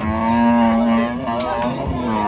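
A cow mooing: one long, steady, low moo, followed by a shorter second moo near the end.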